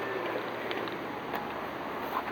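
Steady, low outdoor background noise with no distinct events.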